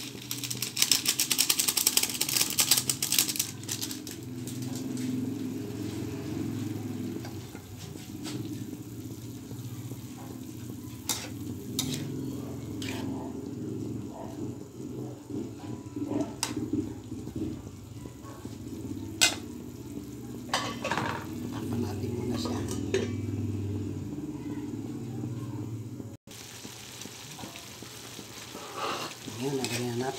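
Mung bean sprouts frying in a metal pan, with a loud burst of crackling sizzle in the first few seconds, then a quieter sizzle under a low steady rumble. A metal utensil clinks against the pan now and then as the sprouts are stirred.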